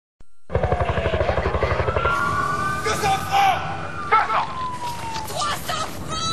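Fire-emergency noise: a fast low throbbing for the first second and a half or so, siren wails gliding down, then up, then down again, and people shouting.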